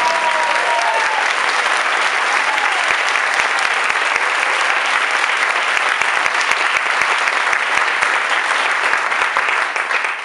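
Audience applauding, a dense, steady clapping that begins to die away at the very end.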